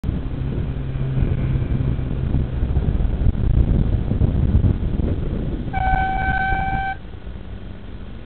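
Road traffic rumble and wind noise on a moving bicycle, with a vehicle passing close, then a single steady horn blast lasting just over a second, about six seconds in.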